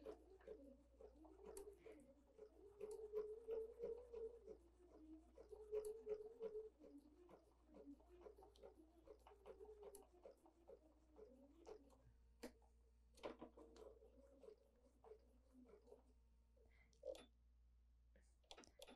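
Bernina 770 QE sewing machine running a straight stitch through wool appliqué at slow, changing speed: a faint hum that rises and falls in pitch, with scattered light clicks.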